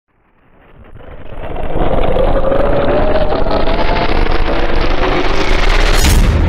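Cinematic whoosh riser for a logo reveal: rushing noise swells up from silence over the first two seconds, then keeps brightening and rising in pitch, building into a sudden hit at the very end.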